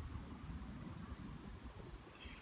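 Faint, uneven low rumble of outdoor background noise, with a light hiss above it.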